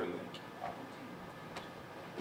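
Bare feet stepping on dojo mats: faint, light taps, a couple a second.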